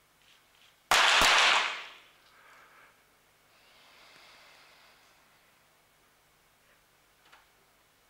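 Two .22 sport-pistol shots about a third of a second apart, about a second in, one from each of the two finalists firing on the same rapid-fire exposure, with a short echo in the range hall.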